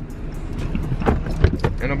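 Steady low rumble of a car's cabin with the engine running, with a few sharp knocks a little over a second in.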